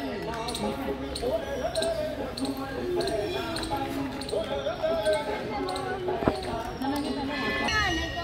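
Indistinct voices of a small group talking as they walk, over light, regular footstep taps on paving, with one sharp knock about six seconds in.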